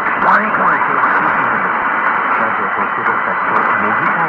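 Long-distance AM medium-wave reception of NHK-2 Sapporo on 747 kHz through a Degen 1103 portable receiver's whip antenna: weak, fading speech buried in steady hiss and static crackles, with a steady high whistle running under it. The narrow, muffled audio is typical of a faint AM signal from thousands of kilometres away.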